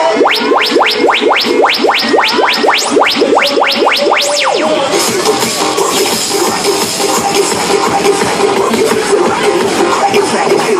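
Loud electronic dance music from a fairground ride's sound system. A run of quick rising sweeps, about four a second, builds for the first four seconds and ends in one higher sweep. The track then drops into a fuller beat about five seconds in.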